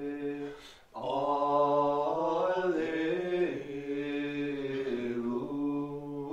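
Liturgical chant of the Divine Office at Lauds, sung mostly on a level reciting note with small rises and falls. It breaks off briefly just before a second in, then resumes.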